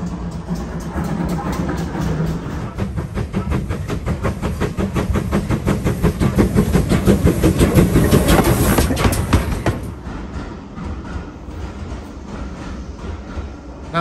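Steam locomotive hauling carriages approaches and runs over the track, a rapid rhythmic beat building to its loudest about eight or nine seconds in, then dropping off sharply to a quieter rumble.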